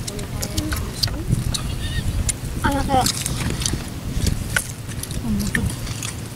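Short fragments of casual voices from people sitting close together, with scattered small clicks and a steady low rumble underneath.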